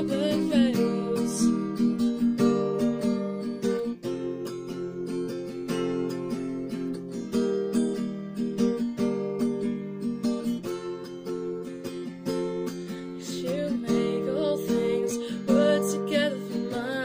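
Acoustic guitar strummed in steady chords, fretted with a capo. A voice sings briefly at the start and comes back in near the end.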